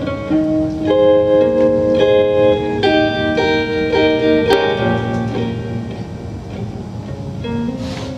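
Solo electric guitar playing the song's instrumental intro: ringing chords that change about once a second, growing quieter in the second half.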